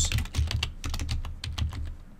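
Rapid, irregular keystrokes on a computer keyboard as a search phrase is typed.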